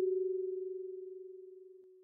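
A kalimba's F#4 tine ringing on and fading out slowly, the tone wavering slightly as it dies away.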